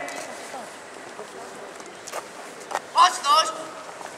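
Quiet street ambience, then about three seconds in a man's voice loudly shouts a military drill command to a formation.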